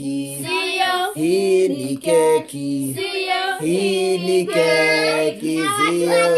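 A child and a woman singing together, holding notes that slide up and down in pitch.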